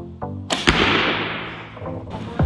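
An arrow shot from a bow: a sudden whoosh about half a second in with a sharp snap, fading away over about a second, over background music.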